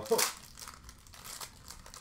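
Plastic wrapper of a hockey card pack crinkling as it is pulled open: one short, sharp crinkle just after the start, then faint rustling as the pack is handled.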